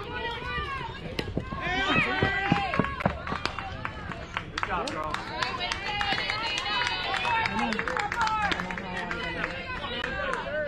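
Several high-pitched voices yelling and cheering, loudest about two seconds in and again from about five seconds on, with scattered sharp claps throughout.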